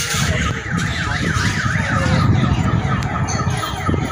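A warbling electronic alarm, its pitch sweeping up and down several times a second, over a steady low rumble.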